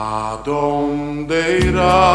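A man singing a slow Spanish-language ballad over a band accompaniment: long held sung notes that change about halfway through, with a new note sung with vibrato near the end.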